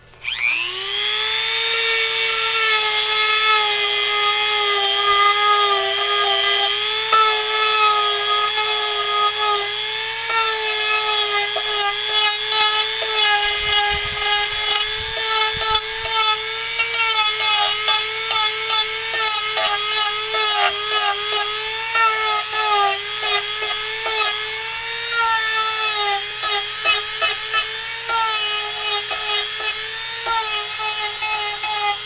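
Handheld rotary tool starting up with a rising whine that settles into a steady high whine. It then works a carved wooden figure, the pitch and loudness dipping and fluttering rapidly as the spinning bit bites into the wood.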